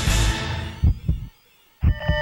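Title-sequence music dies away after two low thumps, leaving a brief silence. Near the end a low thump and a chord of steady beep tones start.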